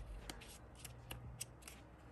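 Faint paper handling: the pages of a small printed booklet being turned, with a scatter of light ticks and rustles.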